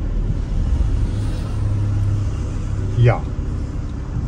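Steady low engine and road rumble heard from inside a taxi cabin while driving. About three seconds in, a man briefly says "Ja".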